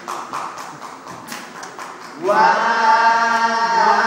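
Acoustic guitar strumming, then about two seconds in a voice comes in on one long held sung note over the guitar.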